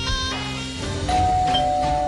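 Drama background music with short stabbed chords, then about a second in a two-note doorbell chime rings out and holds.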